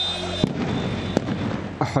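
Two sharp bangs, about three quarters of a second apart, over noisy street commotion, from tear gas canisters being fired at protesters. A steady high whistle-like tone stops at the first bang.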